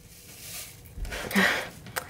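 Hand-held apple slicer being forced down into a whole apple, its blades jammed partway because the apple is lopsided, with a dull knock about a second in and a short breathy sound of effort just after.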